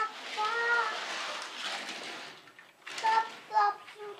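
A young child's wordless, high-pitched vocalizing: a drawn-out rise-and-fall call in the first second, then short squeaky sounds about three seconds in, with a hissy rustle between them.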